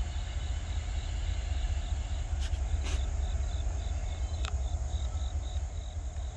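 An insect chirping in a fast, even pulse, high-pitched, starting a couple of seconds in, over a steady low rumble, with a few faint clicks.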